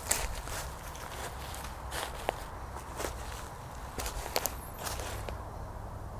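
Footsteps crunching through leaf litter on the forest floor, roughly one step a second, stopping a little after five seconds in.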